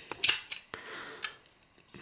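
Hard plastic parts of a Kenner M.A.S.K. Switchblade toy clicking and rattling as they are handled and fitted together: several sharp clicks over about the first second and a half.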